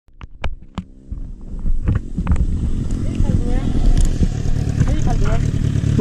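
Motorcycle riding at speed, heard on a bike-mounted action camera: a few sharp clicks in the first second, then a loud low rush of wind on the microphone with the engine underneath, building about a second and a half in and holding steady.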